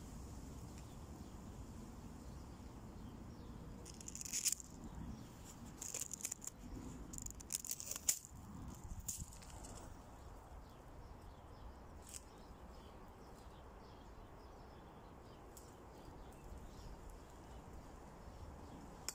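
Dry leaves and twigs rustling and crackling in a cluster of bursts for several seconds near the middle, with a few single clicks later, over a faint low steady rumble.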